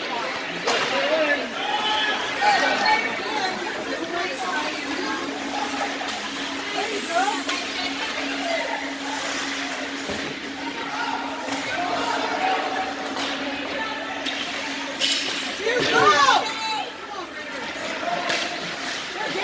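Spectators' chatter and calls ringing in an indoor ice rink during a hockey game. A steady hum runs under them for several seconds in the middle. A sharp knock comes near the end, followed at once by a loud shout.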